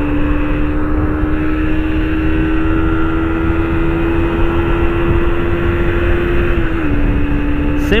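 Honda CG Fan 125's single-cylinder four-stroke engine held wide open on a top-speed run, its note climbing slowly as the bike gathers speed toward 100 km/h, then dipping a little about seven seconds in. Heavy wind rush on the microphone underneath.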